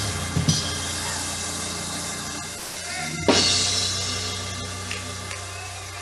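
Church worship music: a held chord rings under drums and slowly fades. A drum and cymbal crash comes about three seconds in.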